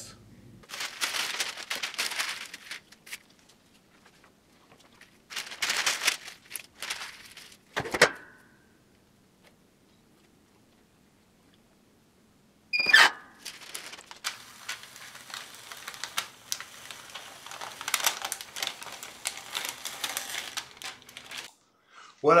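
A powdered sheet of transfer paper rustling and crinkling as it is handled, with a sharp knock about eight seconds in. After a quiet stretch, a clamshell heat press is closed with a sharp metallic clack and short ring, followed by light crackling and rustling.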